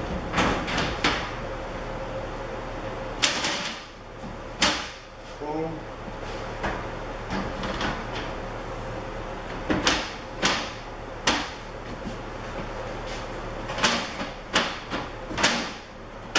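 Laminated shelf boards being knocked and pressed down into the steel frame of a boltless storage rack, seated by hand so they lie flat. The knocks are short and scattered, some coming in quick runs of two or three.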